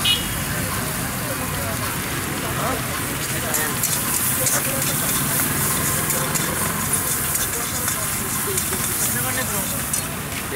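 Noodles and vegetables frying in a wok over a gas burner: a steady rush from the burner flame with sizzling, and a spell of crackling and ladle stirring through the middle.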